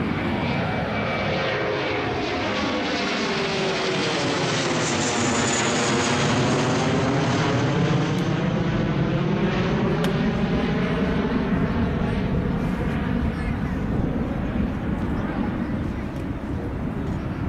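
A low-flying airplane passing overhead: a steady, loud engine noise that fills the whole stretch, with a sweeping, phasing tone that dips and rises again as the plane goes over.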